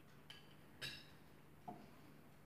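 Near silence broken by faint clinks of tableware: a light click, then a short ringing clink about a second in, and a softer knock near the end.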